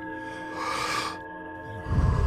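A person breathing audibly during a guided Wim Hof breathing round, over ambient music with steady sustained tones. A hissing breath comes about halfway through. A heavier breath that blows against the microphone starts near the end and is the loudest sound.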